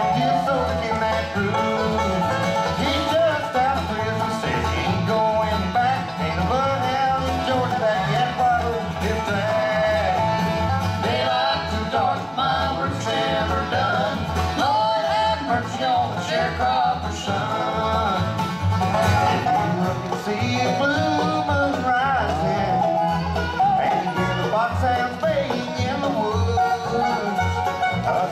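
A bluegrass band playing live: five-string banjo, mandolin, acoustic guitar and resonator guitar over an upright bass keeping a steady beat.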